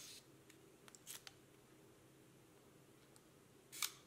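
Minox B sub-miniature camera's shutter giving a little soft click as it is fired by its cable release, once right at the start and again near the end, with a few fainter ticks from the camera and release between.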